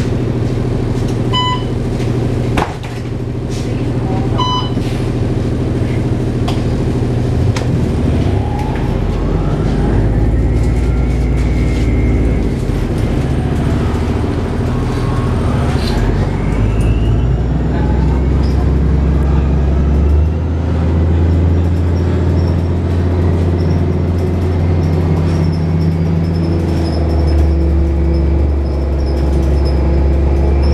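Loud interior sound of a 2007 Orion VII hybrid bus under way: a steady deep drone from its Cummins ISB diesel engine that shifts in level a few times, with the whine of the BAE HybriDrive electric drive rising and falling in pitch as the bus speeds up. Two short electronic beeps sound in the first few seconds.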